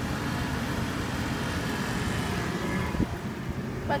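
Steady low outdoor rumble, with a short click about three seconds in.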